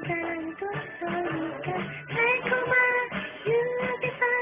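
Karaoke backing track with a guitar-like accompaniment and a woman singing the melody over it; her voice rises to a higher held note about halfway through.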